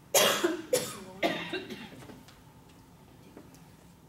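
A woman coughing three times in quick succession into her hand, the first cough the loudest, close to a clip-on microphone.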